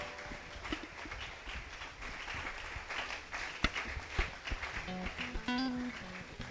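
Soft background music under the hubbub of a congregation in a hall, with a few sharp claps about three and a half seconds in.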